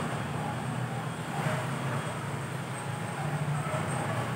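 Steady low background hum under a faint even hiss, with no distinct events.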